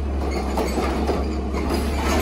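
CNG-powered Heil Rapid Rail automated side-loader garbage truck emptying a recycling cart: the engine drones steadily under hydraulic load while the arm tips the cart and the recyclables clatter into the hopper with irregular knocks and rattles.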